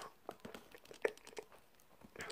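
Faint handling noise from a plastic action figure being turned in the hand: a few light, scattered clicks, the clearest about a second in.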